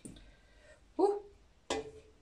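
Three short knocks and clinks against a stainless steel pot as blanched zucchini halves are lifted out of the hot water, each with a brief ring after it.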